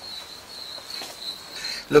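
Crickets chirping: a thin, steady, high-pitched trill.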